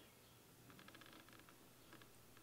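Near silence: room tone with a few faint, light clicks near the middle.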